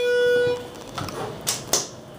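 Schindler traction elevator's chime: one ringing tone that fades out about half a second in, followed by a few light clicks.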